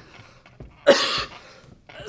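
A man coughing, one cough about a second in.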